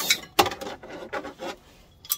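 BMW E36 handbrake cable being pulled out from under the car, its sheath and metal fittings clicking and rubbing against the underside: a sharp knock about half a second in, then a run of lighter clicks that dies away.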